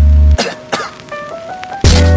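Edited-in background music with a heavy sustained bass. It drops out about a third of a second in, leaving a few sparse notes and a couple of sharp hits, then comes back in full just before the end.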